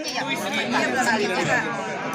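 Indistinct chatter of several people talking over one another, mostly higher-pitched voices, with no single clear speaker.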